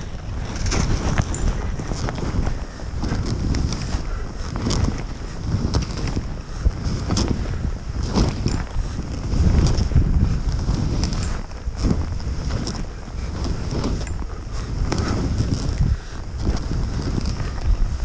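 Wind buffeting a helmet camera's microphone during a fast ski descent, with the hiss of skis cutting through soft snow. The noise swells and eases every second or two as the skier turns.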